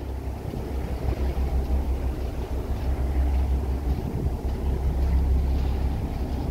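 Steady low rumble of a cargo ship under way, heard from its open side deck, with wind buffeting the microphone.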